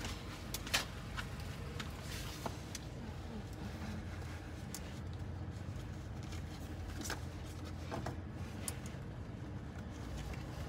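Steady low hum inside a parked car, with scattered small clicks and knocks of someone reaching around the seats to pick up a dropped card.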